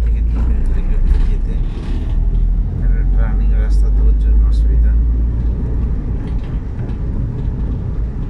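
Steady low rumble of vehicle noise, with indistinct voices and a few short clicks over it.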